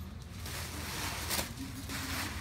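Paper gift bag and tissue paper rustling and crinkling as a present is pulled out, with a sharper crackle about a second and a half in.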